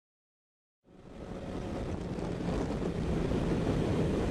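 Silence for about the first second, then wind noise and a motorcycle engine at highway cruising speed fade in and build steadily, heard from a helmet-mounted camera. The bike is a 1988 Honda CBR600F1 Hurricane with an inline-four engine.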